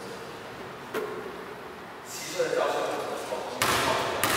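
A ball being juggled, striking the body and feet in a reverberant tiled hall: a sharp knock about a second in, then a louder thump near the end.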